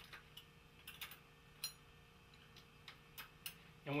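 Faint, irregular metallic clicks from a hex key turning the rear derailleur's cable anchor bolt, loosening the shift cable to release the derailleur's tension.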